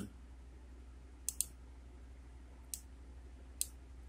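A computer mouse clicking: two quick clicks about a second and a half in, then single clicks near the end, over a faint, steady low hum.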